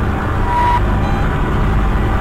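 Experimental noise music: loud, dense, rumbling noise, strongest in the bass and without a beat, with a brief thin tone about half a second in.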